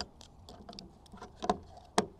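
Light plastic clicks and handling noise from the battery compartment of a children's metal detector as it is closed up, with a sharper click near the end.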